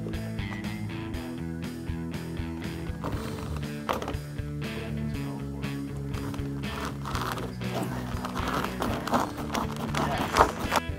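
Background music, with the rhythmic rasp of hand-saw strokes through a plastic PVC floor tile: first a hacksaw, then a crosscut wood saw.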